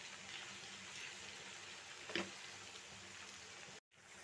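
Oil sizzling steadily as sliced potatoes and onions fry in a non-stick pan being stirred with a silicone spatula, with a single short knock about two seconds in. The sound cuts off suddenly just before the end.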